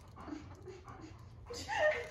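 Greyhound whimpering briefly near the end, a short high, wavering whine over soft sounds of him mouthing a plush toy.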